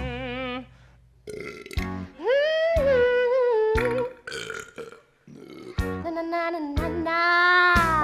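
Long, wavering stage burps traded back and forth between the actors, three drawn-out pitched belches with sharp knocks between them, over music.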